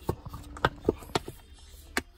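A few sharp clicks and knocks of a plastic lunch tray and its collapsible silicone bowls being handled and pressed flat, about four or five spread across two seconds, with one more right at the end.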